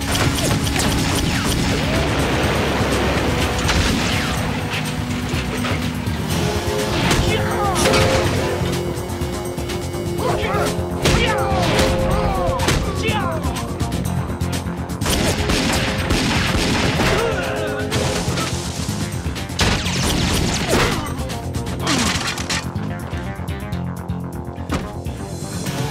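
Dramatic TV action score over a staged fistfight: repeated sharp punch, kick and crash impacts with wordless grunts and shouts.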